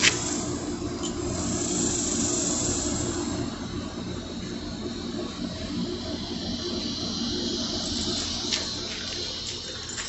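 Steady outdoor background noise, a low hum with hiss over it, with one sharp click at the very start.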